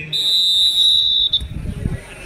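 A referee's whistle blown in one long, steady, high-pitched blast lasting over a second, followed by low thumping rumble near the end.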